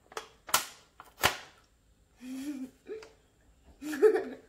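Two sharp crackling snaps of a paper journal page as a girl bites into it and pulls it, then short closed-mouth hums and a little giggle near the end.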